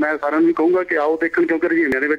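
A person talking, continuous speech.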